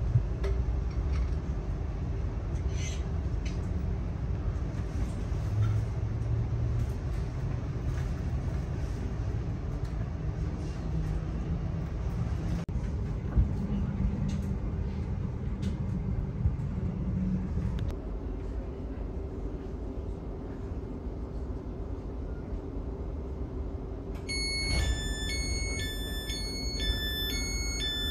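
Inside a Great Northern Class 717 electric train on the move: a steady rumble of wheels on track with a low motor hum, which cuts off about two-thirds of the way through as the train coasts. Near the end a run of electronic chime tones sounds.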